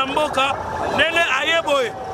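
A man's voice shouting, with other voices in the crowd around him.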